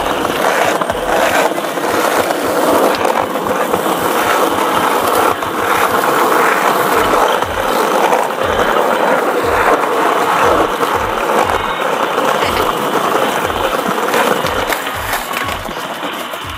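Skateboard wheels rolling over paving: a steady, loud rolling grind, with a series of low thumps beneath it.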